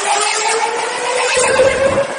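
Space Mountain roller coaster train running along its track in the dark: a loud rattle with a steady high squeal, and a deep rumble that comes in over the last half second.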